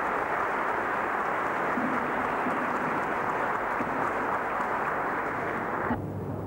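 An audience applauding steadily, a dense even clapping that sounds dull and muffled.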